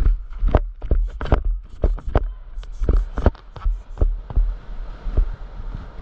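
Irregular sharp knocks and thumps, several a second, over a steady low rumble.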